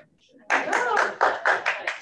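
An audience applauding, starting about half a second in, with a few voices among the claps.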